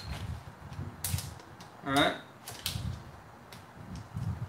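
Several sharp little clicks and taps of a plastic sour cream tub and a utensil being handled on a stone kitchen countertop.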